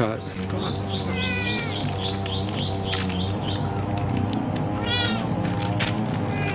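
Animal calls: a quick run of high, falling chirps, about four a second for roughly three seconds, then a longer rising-and-falling call about five seconds in, over a steady low hum.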